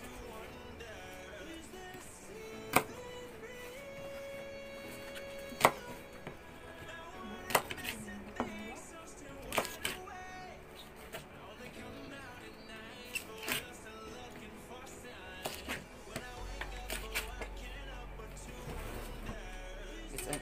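Chef's knife cutting through leafy greens and striking a plastic cutting board, in sharp single knocks a few seconds apart, over background music.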